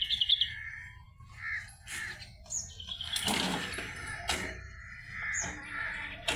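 Birds chirping in short, repeated high calls, with a louder, harsher call about three seconds in and a single click soon after.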